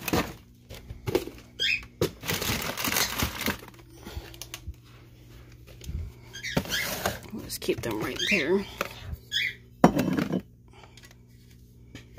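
Plastic storage bins, lidded plastic containers and cardboard boxes being handled and set onto a shelf, with rustling, scraping and knocks. The loudest is a single sharp knock just before the ten-second mark.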